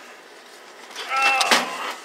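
Scrap electronics being handled: a single sharp clatter about one and a half seconds in, just after a short 'Oh'.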